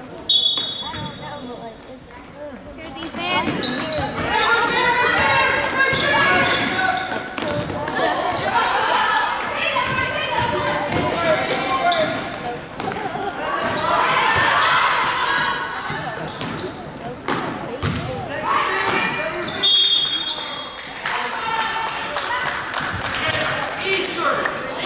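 A basketball bouncing on a hardwood gym floor under loud, echoing voices of spectators and players, with two short shrill tones, one near the start and one about twenty seconds in.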